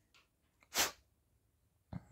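A single short, sharp burst of breath noise from a person, such as a sneeze or a quick blow of air, about three-quarters of a second in.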